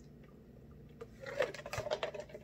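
A person drinking from a foam cup: near silence at first, then a few short sipping and swallowing sounds in the second half.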